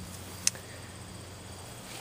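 Quiet, even background noise with a single brief sharp click about half a second in.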